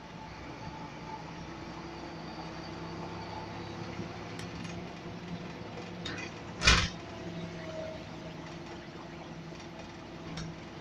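Volvo Wright Eclipse Urban single-deck bus heard from inside the passenger saloon while on the move: a steady engine and drivetrain drone with a few light rattles, and one loud thump about two-thirds of the way through.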